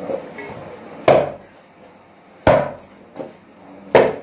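Yeast dough being punched and pressed by hand into a stainless-steel bowl while it is kneaded: three dull thuds about a second and a half apart.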